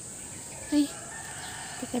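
A rooster crowing faintly in a drawn-out call through the second half, preceded by a short, louder pitched sound about three-quarters of a second in.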